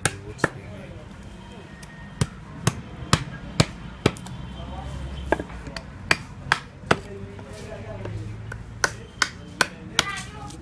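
Wooden mallet striking a steel chisel into a wood carving: sharp knocks in irregular runs of two to four, about half a second apart, with pauses between runs.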